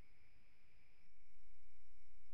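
Pause with no speech: a faint steady high-pitched electronic whine over a low hum and hiss, the background noise of a computer microphone line. The hum gets slightly louder about a second in.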